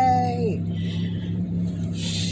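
A woman's sung note trails off and drops away about half a second in, leaving the steady low drone of a car's engine heard inside the cabin.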